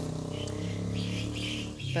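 A steady low drone, with faint bird chirps above it.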